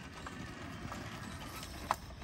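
Talaria Sting R electric dirt bike riding over grass, heard faintly as a low hiss with a few light knocks, and a short sharp sound just before the end.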